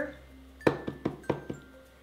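Makeup compact and brushes being handled: five light clinks and taps of small hard objects in quick succession, starting a little over half a second in.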